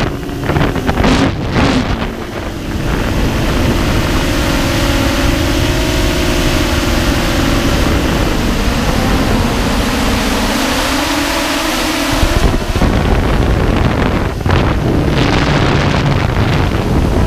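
Storm 8 multirotor drone's motors and propellers humming steadily, picked up by the camera on board, with wind buffeting the microphone. The motor pitch dips briefly about two thirds of the way through, and the wind gusts are heavier near the start and the end.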